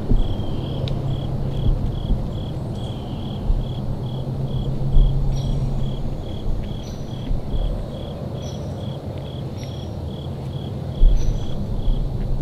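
A cricket chirping steadily, about three short, even chirps a second, over a low rumble.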